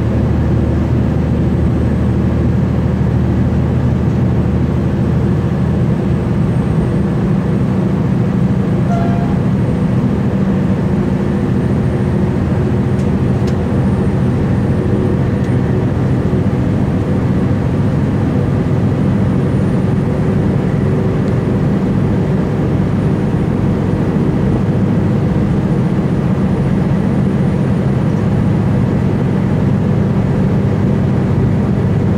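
Cabin sound of a V/Line VLocity diesel multiple unit running at speed: a steady underfloor diesel engine drone mixed with wheel and rail noise, even throughout.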